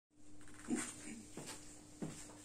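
Footsteps, about one every two-thirds of a second, the first the loudest, over a faint steady hum.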